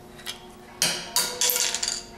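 Metal-on-metal clinks from hand tools and small steering parts knocking against a recumbent trike's head tube and spindle: a light tap, then two sharp clanks about a second in, followed by a short ringing rattle.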